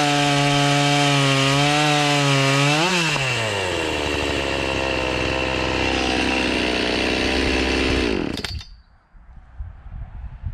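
Oleo-Mac GS 651 two-stroke chainsaw running at full throttle in a cut, its revs flaring briefly about three seconds in as the cut finishes, then dropping to idle. The engine is switched off about eight seconds in.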